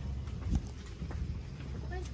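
Footsteps of people walking on a paved path, with low rumble on the handheld phone's microphone and one louder thump about half a second in; faint voices near the end.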